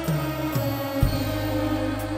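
Live band playing a trot song's instrumental passage: sustained chords over a bass line that steps down, with a sharp drum hit about a second in.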